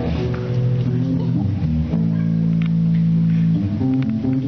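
Live rock band playing on guitars and drums, heard with hall echo from the audience. About halfway through, the band holds one sustained chord for a second and a half, then moves on.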